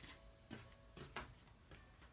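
Near silence: a few faint, soft knocks and rustles of hands handling a damp cotton t-shirt and tools on a wooden table, over a faint steady hum.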